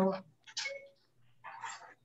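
A voice trailing off on a drawn-out word at the start, then a short faint sound about half a second in and a soft breathy noise near the end, over a low steady hum.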